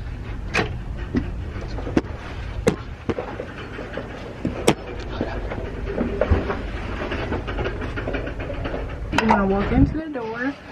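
Handling of a cabin door and camera: scattered sharp clicks and knocks over a steady low rumble. A short stretch of voice comes near the end.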